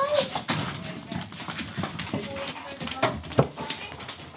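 A dog up close, scuffling and pushing about with a few short whines, among scattered knocks and rustling.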